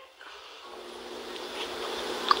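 Steady background hiss with a faint steady hum, growing slowly louder.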